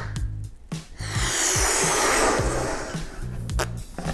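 Breath blown hard through a plastic mouthpiece into a toy balloon, a steady rush of air lasting about two and a half seconds that starts about a second in, over background music.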